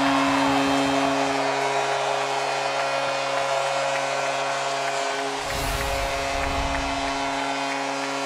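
Arena goal horn sounding one long steady note over a cheering crowd, marking a goal confirmed on video review. A deep rumble joins in about five and a half seconds in, for about two seconds.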